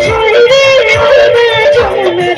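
A woman singing into a microphone with a live band behind her, amplified through a PA system; her voice bends and ornaments the melody, with a wavering, vibrato-laden held note about half a second in.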